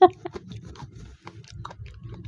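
A short burst of a person's voice at the very start, then soft scattered clicks over a low hum.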